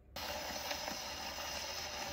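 Phonograph needle running in the lead-in groove of a 1933 Brunswick 78 rpm shellac record on an acoustic gramophone with a gooseneck tone arm: a steady surface hiss with a few faint crackles.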